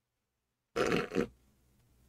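A man's short stifled laugh, a brief two-part grunt in the throat about three-quarters of a second in.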